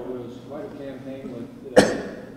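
A man coughs once, sharply and close to a microphone, near the end. Quieter speech comes before the cough.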